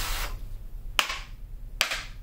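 A deck of cards being handled and shuffled by hand: a short rustle that fades at the start, then sharp card snaps about a second in and again near the end.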